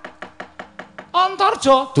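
Wayang kulit dalang's rapid knocking on the cempala and keprak: a fast, even run of sharp wooden-and-metal raps, about ten a second, as the puppets fight. A man's voice comes in about halfway through.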